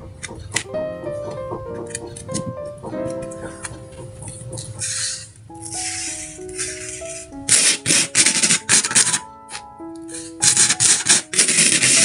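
Background music with a light plucked melody; from about halfway in, repeated loud bursts of dry rustling and scraping as coloured sand is scattered from a plastic spoon onto a sticky sand-painting board and spread across it.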